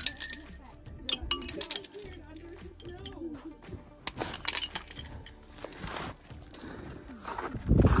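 Icicles being struck by hand, giving a run of glassy clinks and tinkles, thickest in the first two seconds and again about four seconds in.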